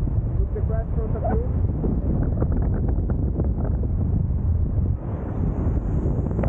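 Wind rushing and buffeting over the camera microphone in paraglider flight: a loud, steady rumble, with brief fragments of a voice under it near the start.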